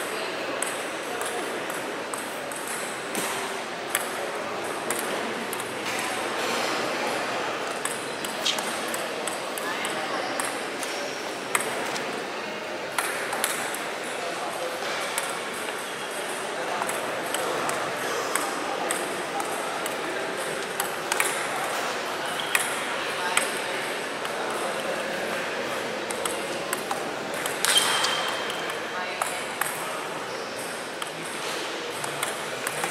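Table tennis ball clicking off bats and table in irregular sharp taps, over a steady murmur of background voices. A louder sharp hit comes near the end.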